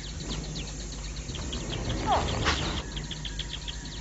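Insects chirping in a steady rhythm of short, high pulses, about five a second, over a low hum. About two seconds in, a single short call falls in pitch.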